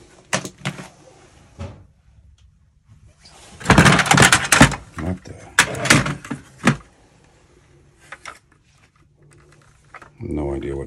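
Plastic toys clattering and knocking in a plastic storage tub as they are rummaged through and lifted out, with a few sharp knocks at first, a longer burst of clatter a few seconds in, shorter bursts after it, and then only small clicks.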